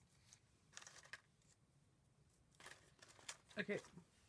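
Faint rustling and light handling noises as small paper flowers and bows are set into a paper-covered desk caddy and the caddy is moved. There are a few short rustles, about a second in and again near the three-second mark.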